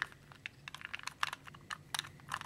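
A 2x2 plastic puzzle cube being turned by hand: a run of light, irregular clicks as its layers are twisted.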